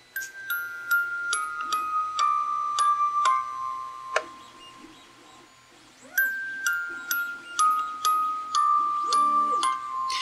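Tomy 'Bring Along a Song' wind-up music box playing a 3D-printed test tape: its metal comb plucks a run of about eight notes stepping down in pitch, then the same descending run again about six seconds in. A sharp click sounds between the two runs, about four seconds in.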